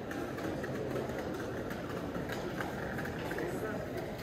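Busy pedestrian street ambience: passers-by talking, with no words made out, over a steady low hum of city noise.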